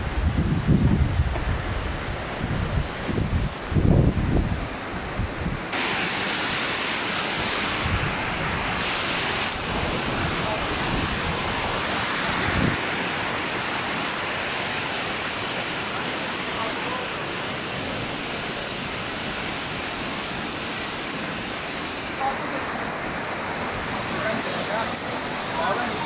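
Fast mountain stream rushing over rocks: a steady rushing noise that sets in about six seconds in. Before that, wind buffets the microphone in gusts.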